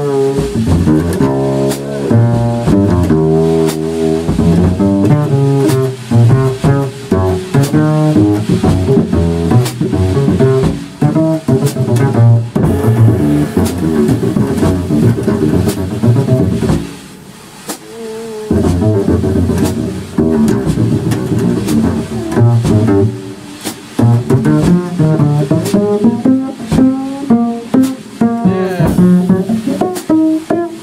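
Upright double bass played pizzicato in jazz, fast runs of plucked notes in the low and middle range, with a short break in the playing about seventeen seconds in.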